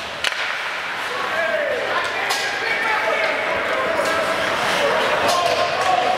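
Ice hockey rink sound in a large echoing arena: spectators' voices and calls carrying through the hall, with several sharp knocks of sticks and puck against the ice and boards.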